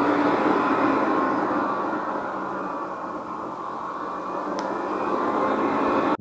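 PowerPC G5 iMac's cooling fans running loud, like it's trying to take off: a steady whoosh with a faint whine that eases off around the middle and climbs again toward the end. The fans keep ramping up and down because the machine wrongly thinks it is overheating. The cause could well be the hard drive's thermal sensor, which has been removed.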